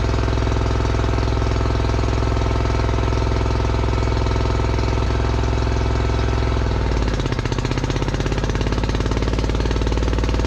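Crawler dozer's engine running with a fast, steady clatter, heard inside the cab. About seven seconds in the engine note drops and turns uneven, then slowly climbs back.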